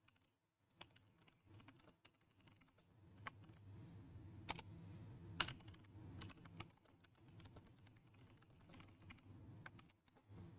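A few faint, scattered computer-keyboard keystrokes, typing a short message, against near silence.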